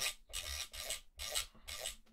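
Fingers turning the freshly cleaned rotary encoder knob of an Empress Effects Zoia in about five short strokes, a faint rubbing scrape of skin on the metal knob with the encoder's detent clicks.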